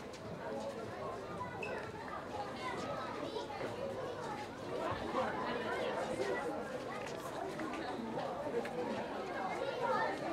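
Many voices talking over one another at a low level, a murmur of chatter with no single clear speaker.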